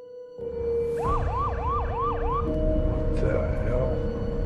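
Police car siren giving a short yelp: five quick rising sweeps over about a second and a half. A steady held music drone runs underneath.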